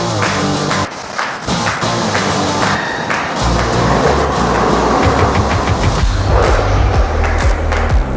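Background music with a steady beat and bass line.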